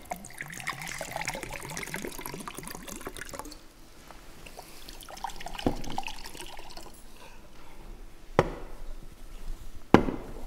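Water poured from a bottle into a glass, the gurgle rising in pitch as the glass fills for about three and a half seconds. Two sharp knocks follow later on.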